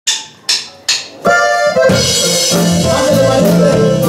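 A norteño band starts a song live: three sharp clicks count it in, then the accordion comes in with a held chord about a second in, and the bass, drums and guitar join just before the two-second mark and play on together.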